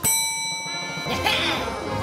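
A single metallic ding, struck once at the start and ringing on with a slow fade, like a bell sound effect.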